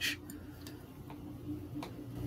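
Faint steady room hum with three soft, irregular ticks.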